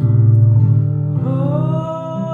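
A slow gospel song performed live: sustained low chords on the accompaniment, then a woman's voice enters about a second in, sliding up into a long held note.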